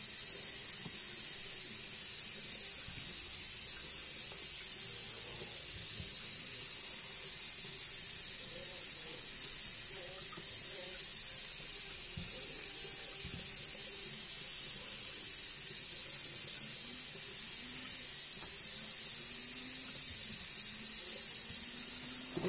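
Food frying in a pan: a steady high sizzling hiss, with a few soft knocks of utensils or handling.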